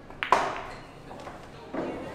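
Pool cue tip striking the cue ball, then at once the loud click of the cue ball hitting the object ball, which is potted. A duller knock follows near the end.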